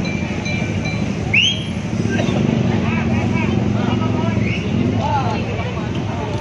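Large tour bus diesel engine idling with a steady low hum, under the chatter of bystanders' voices. A short high chirp about a second and a half in.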